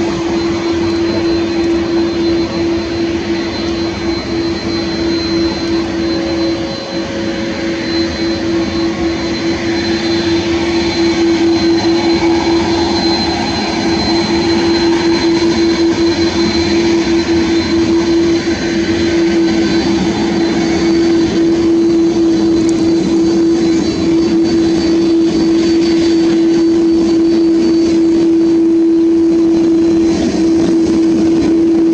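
Airbus A330-300 airliner's twin turbofan engines running at low taxi power: a steady whine and hum held on one pitch, growing a little louder about a third of the way in as the aircraft passes close by.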